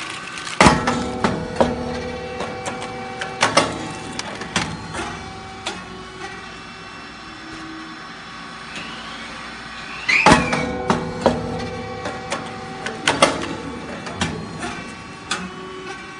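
Puffed rice cake machine (model 602) running its baking cycle: two sharp bangs about ten seconds apart, each followed by a run of clicks and clatter, over a steady machine hum.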